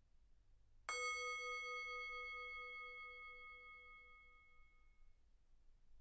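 A single meditation bell struck once, about a second in, ringing out and slowly fading over about four seconds with a gentle wobble in its low tone; it marks the start of the meditation.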